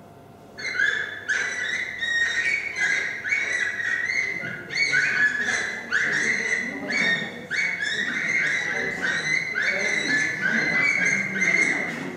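A recorded animal call played back over loudspeakers: a short, high call that rises in pitch, repeated about twice a second, starting about half a second in.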